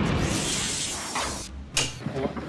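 A whoosh sound effect for a scene transition that fades out over about a second and a half, followed by a short, sharp click near the end.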